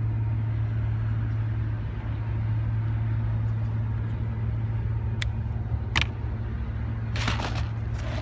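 A steady low hum runs underneath. Over it come two sharp clicks about five and six seconds in, as cutting pliers snip through the fishing leader by the Albright knot. A short burst of handling noise follows near the end.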